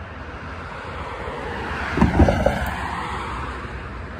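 A car passes along the street, its tyre and engine noise swelling to a peak about halfway through and then fading, with a few low thumps as it goes by.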